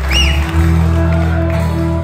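Live rock band playing an instrumental passage, with electric guitar over bass; the low notes change about half a second in.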